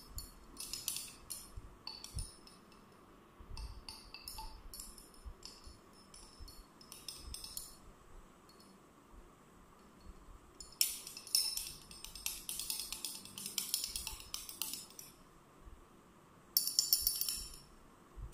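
Glass stirring rod clinking rapidly against the inside of a glass test tube as copper sulphate crystals are stirred into water to dissolve them. The clinks come in four bursts with pauses between.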